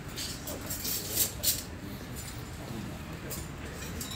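Cutlery and crockery clinking, with two sharper clinks a little over a second in, over faint voices.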